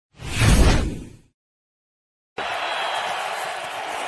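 A deep whoosh sound effect over an animated logo transition, lasting about a second. After a second of dead silence, steady stadium crowd noise cuts in about two and a half seconds in.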